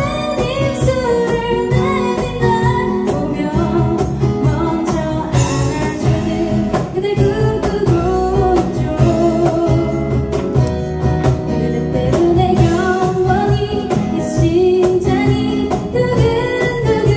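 A woman singing a pop song live into a microphone, backed by a small acoustic band of steel-string acoustic guitar, cajon and bass guitar, with an even, steady beat.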